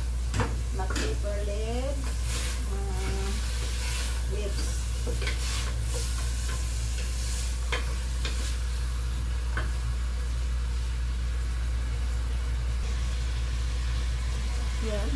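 A wooden spoon stirs and scrapes in a steel pot of green beans and meat frying on a gas burner, with a light sizzle. The scrapes come in short irregular strokes, mostly in the first two-thirds, over a steady low hum.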